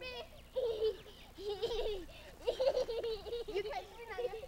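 A small child laughing in several short bursts.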